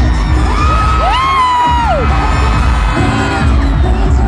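Live pop music through arena speakers with a heavy bass beat, and the audience cheering and screaming over it.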